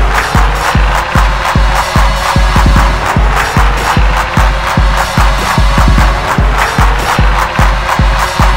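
Early-1990s hardcore techno track: a fast, steady kick drum beat under a synth line that rises in pitch and levels off about every two and a half seconds.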